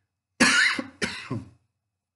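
A man coughing twice in quick succession, the first cough about half a second in and the loudest.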